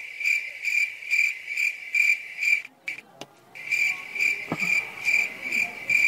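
Cricket chirping, loud and close, in an even pulsing trill of about three chirps a second that breaks off briefly about halfway through. It is a comic 'crickets' cue for a blank, awkward silence while the characters try to think of an idea.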